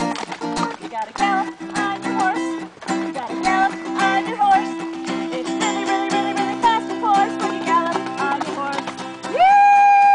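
Acoustic guitar strummed in a steady rhythm with a woman singing over it. Near the end a loud, long high call rises, holds and then glides down.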